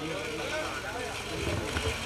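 Faint voices of several people talking off the microphone, over a low steady rumble of background noise.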